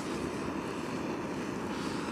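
Jetboil camping stove's gas burner running with its flame lit, a steady rushing hiss.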